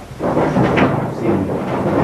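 Loud, steady rushing noise with no clear pitch, starting abruptly just after the start.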